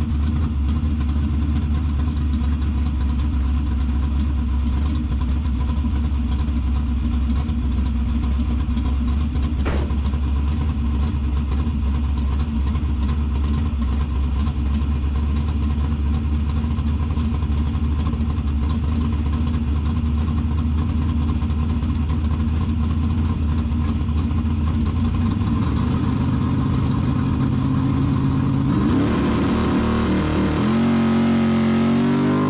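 A drag-racing truck's engine idling steadily, heard from inside the caged cab. Near the end the engine speed steps up, then rises in a quick climbing pitch as it is revved.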